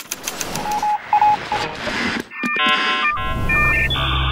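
Electronic musical sting: a noisy hiss with a few short beeps, then a run of layered synthetic tones that change in steps, with a deep bass coming in near the end. It is the podcast network's sound logo leading into its spoken tagline.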